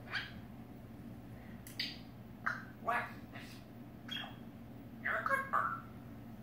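African grey parrot making a string of short squawks and speech-like mumbles, about eight separate sounds, the longest a little after five seconds in.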